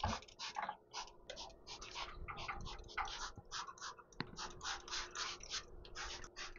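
Hand trigger-spray bottle squirting onto wooden ceiling timbers in a quick series of short hisses, about three or four a second.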